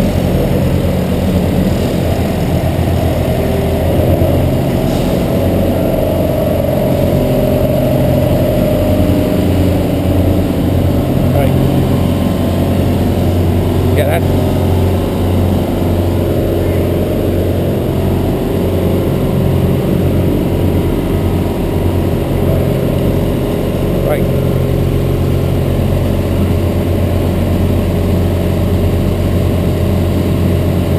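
A vehicle engine running steadily, a low even hum that holds through the whole stretch, with a few faint clicks.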